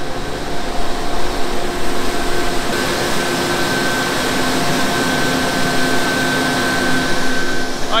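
Paddlewheel of a showboat turning and churning the water, a steady rushing wash with a faint steady machine hum under it.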